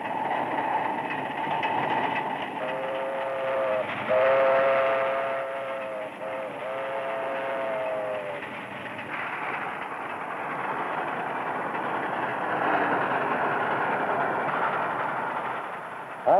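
Steam train running with a steady rumble. Its whistle, sounding two tones together, blows three times in the first half.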